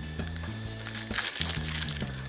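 Background music with a low, stepping bass line, and the thin plastic film and lid of a natto cup crinkling briefly about a second in as they are peeled open.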